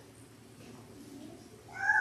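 Quiet room tone, then near the end a short, high-pitched vocal cry that rises and falls in pitch.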